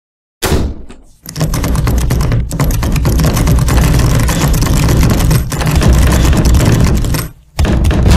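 A door slams shut, then a long, rapid run of clanks and clicks as lock after lock and padlock is fastened on it, pausing briefly twice. Another loud burst starts near the end.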